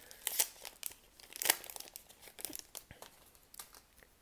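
Hockey card pack wrapper being torn open and crinkled by hand: irregular crackling and tearing, thickest in the first second or so, then scattered crinkles that thin out toward the end.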